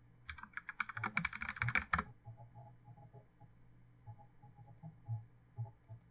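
Computer keyboard typing, a password being entered: a quick run of keystrokes for about two seconds, then fainter, scattered clicks.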